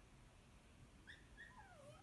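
Faint cries of a pet animal in a very quiet room: a few short calls, each gliding down in pitch, starting about halfway through.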